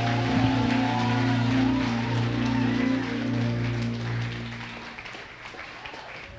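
The end of a worship song: the band's last chord is held and fades out about five seconds in, with light applause over it.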